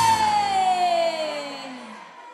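Live dance band's closing note: a held tone slides steadily down in pitch over about two seconds and fades out, ending the song.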